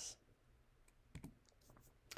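Near silence: room tone, with a single faint click a little past a second in.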